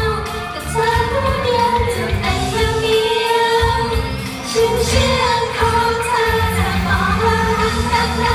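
Female idol pop group singing a pop song live through microphones over a steady beat and bass, with long held notes. The low beat thins out for a moment in the middle and then comes back.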